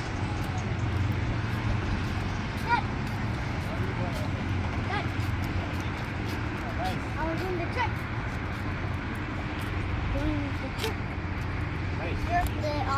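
Steady low outdoor rumble with short, scattered snatches of distant, indistinct voices.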